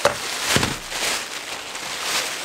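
Thin plastic shopping bag rustling and crinkling as items are pulled out of it, with a short thump just over half a second in.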